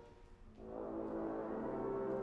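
Trombone choir playing sustained chords: one held chord dies away, and after a brief gap about half a second in, a new chord swells in and holds, with a low note sounding beneath.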